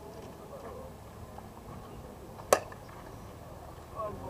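Slowpitch softball bat hitting a pitched ball: a single sharp crack about two and a half seconds in.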